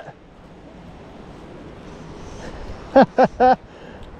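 Steady, low rushing of moving river water and wind on the microphone, with a man's voice breaking in briefly for three quick syllables about three seconds in.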